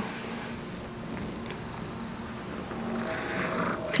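A hairless Sphynx cat purring close to the microphone, a steady low rumble.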